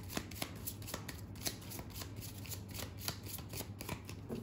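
A deck of tarot cards shuffled by hand: quick, irregular card clicks and rustles, several a second.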